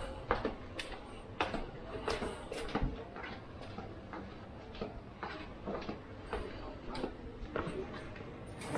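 Footsteps on stone steps and paving at a walking pace, about two steps a second, with people talking in the background.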